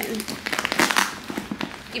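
Nylon duffel bag rustling and crinkling as it is handled, a quick run of crackles through the middle.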